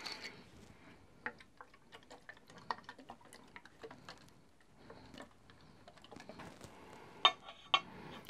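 Faint small clicks and taps of a plastic bottle of honing fluid being uncapped, dabbed onto polishing papers on a glass plate and handled, with a sharper click near the end.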